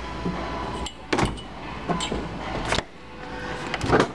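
French-door refrigerator's doors being shut and its bottom freezer drawer pulled open: a few short knocks and clunks, the loudest just before the end, over a steady low hum.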